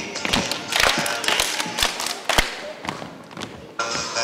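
Irregular thumps and taps of children's feet on a wooden gym floor as they move about in lines, the loudest thump a little past halfway, over voices and music.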